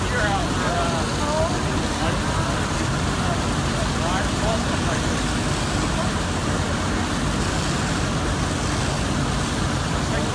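Steady rumble of fire apparatus engines running at a working fire, mixed with the hiss of hose streams, with faint voices of onlookers in the first couple of seconds and again briefly mid-way.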